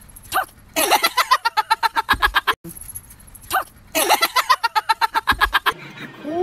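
A dog yapping in a fast run of pitched yips, about seven a second, the run opening with a single rising yelp. The same run is heard twice, with a short break between.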